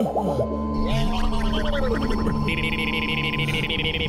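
Comic film score with cartoon-style sound effects: pitched swoops that slide down and arc up and down over a steady held tone and low bass notes, with a fast buzzing rattle in the second half.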